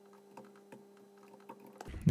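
A few faint, scattered computer keyboard keystrokes over a low steady hum.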